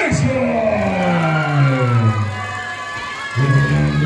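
Music over the arena's PA with a long, drawn-out voice falling in pitch over about three seconds, then a steadier held voice near the end, with crowd noise underneath.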